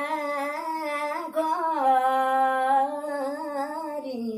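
A woman singing a nyoli, a Kumaoni folk song, solo and unaccompanied. It is a slow, ornamented melodic line of long held notes with wavering turns, one note sustained through the middle.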